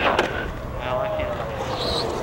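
A man's voice making a drawn-out, wordless sound that falls gently in pitch, with a short click just after the start.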